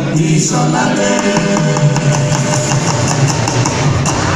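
Live juju band music: a group of male voices singing together over electric guitars, keyboard and drums, with a steady beat.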